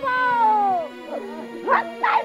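A long, high wailing cry that slides down in pitch over about a second, then a shorter rising cry near the end, over background music with a steady drone.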